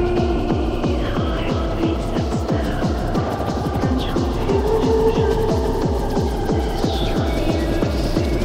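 Gabba hardcore electronic dance track: a fast, steady run of distorted kick drums, each one dropping in pitch, under held synth chords.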